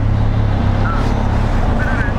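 Benelli TRK 502X's parallel-twin engine running steadily at low revs as the motorcycle moves off in traffic.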